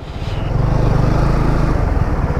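Benelli motorcycle engine pulling away slowly from a stop, its low pulsing rumble building over the first half second and then running steadily.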